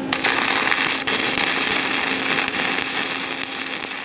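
Stick (shielded metal arc) welding arc from a 1/8-inch 7018 low-hydrogen electrode running a bead on steel plate: a steady crackle that holds its level throughout.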